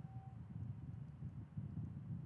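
Faint low background rumble, with a brief faint steady tone just after the start.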